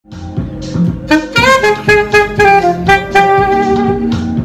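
Saxophone playing a melody over a backing track with a steady beat; the sax comes in about a second in and holds long notes.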